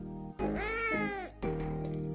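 A kitten meowing once, about half a second in: one drawn-out meow that rises and then falls in pitch, over background music.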